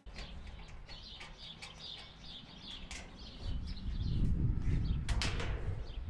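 Outdoor background: small birds chirping again and again, with a low rumble that builds in the second half and a brief sharp noise near the end.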